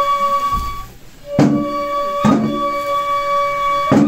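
Traditional Japanese festival music: a bamboo flute holds long, steady notes, breaks off briefly about a second in, then comes back in. Three heavy thumps fall under the flute, the first as it returns.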